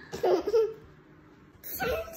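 A toddler laughing in two short bursts, one just after the start and one near the end.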